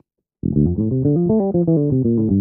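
Electric bass guitar playing a quick run of single notes from an F major seven arpeggio. The notes start about half a second in, climb and then come back down.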